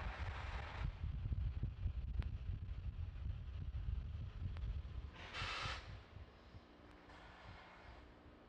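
Wind buffeting an outdoor launch-pad microphone as a low rumble, with three short hisses. The rumble drops away about six seconds in.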